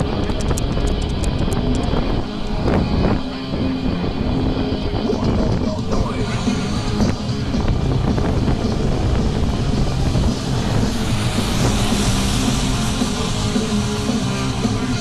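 Music playing, with a steady low rumble underneath, and a quick run of faint high ticks in the first two seconds.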